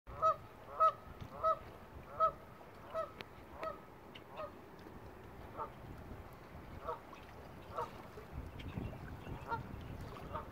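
A goose honking in a repeated series, about one honk every two-thirds of a second, loudest in the first couple of seconds, then fainter and more widely spaced.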